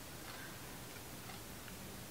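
Faint ticking of an analogue wall clock over quiet room tone.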